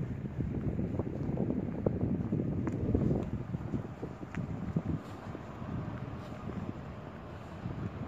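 Wind buffeting the microphone: a low, uneven rumble that swells about three seconds in and eases off through the second half.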